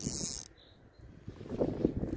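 Wind buffeting on a phone's microphone, with hiss in the first half second, a short lull, then low rumbling handling noise of fingers on the phone.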